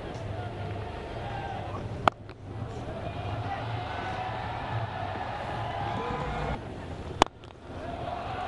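Cricket stadium crowd hubbub with two sharp cracks, one about two seconds in and one about a second before the end. The later crack is the bat striking the ball for a six.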